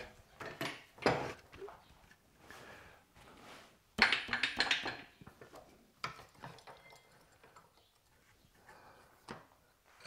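Scattered knocks and clicks of a wood lathe's tailstock and live center being slid into place and set against a turned wooden piece held on a jam chuck, with the loudest knock about four seconds in.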